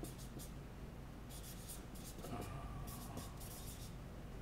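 Felt-tip marker writing on a whiteboard: several groups of short, quiet scratchy strokes as letters are written out one after another.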